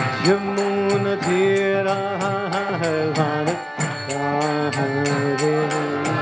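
A man singing a devotional chant in long held notes, sliding into each note, over a steady percussion beat of about three strikes a second.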